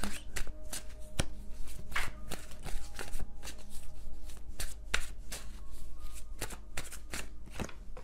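A tarot deck being shuffled by hand: a quick, irregular run of card clicks and slaps that stops just before the end.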